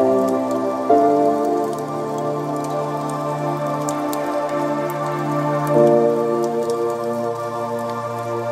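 Ambient background music of sustained, held chords, the harmony shifting about a second in and again near six seconds.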